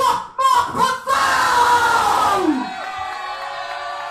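Shouted vocals, then about a second in a loud band hit: a cymbal crash and an amplified guitar chord that ring out and slowly fade.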